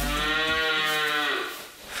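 A cow mooing: one long call that fades out about one and a half seconds in.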